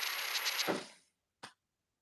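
La Spaziale S8 two-group espresso machine's steam wand venting a strong, steady hiss of steam that dies away just before a second in as the steam knob is closed. A single short click follows about half a second later.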